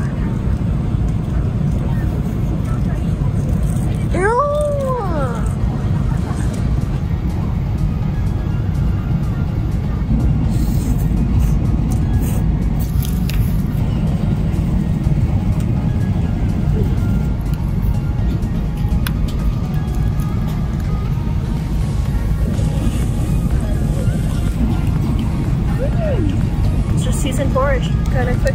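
Steady low drone of an airliner cabin in flight, with background music over it. About four seconds in there is a short vocal sound that rises and falls in pitch.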